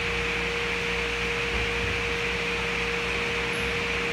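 A steady mechanical hum with hiss and one constant tone, like a running fan.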